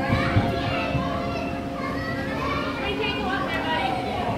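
Several children's voices calling and chattering over one another as they play, over a steady low hum.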